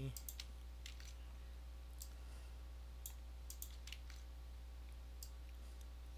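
Scattered sharp clicks of computer keyboard keys and mouse buttons, irregularly spaced, over a steady low electrical hum.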